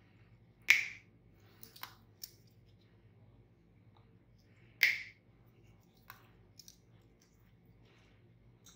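Toenail nippers snipping through extremely thick fungal toenails: two loud, sharp snaps about four seconds apart, with a few fainter clicks between them.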